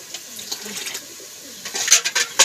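Water splashing as it is poured from a small steel bowl into a clay bowl of rice, loudest near the end. A bird calls faintly in the background.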